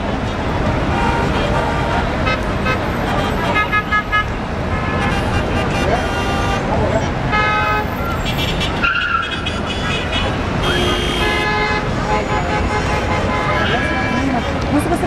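Busy street traffic with car horns honking several times, some in quick short beeps, over a steady din of engines and voices.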